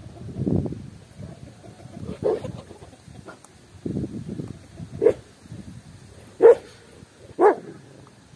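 A dog barking four short single barks, the last three about a second apart and the second-to-last the loudest, over a low rustling background.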